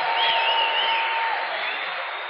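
Large audience applauding and cheering, with one high wavering cry rising above the clapping in the first half. The applause dies down near the end.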